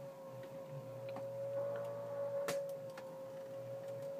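Faint steady hum, with a single sharp click about two and a half seconds in.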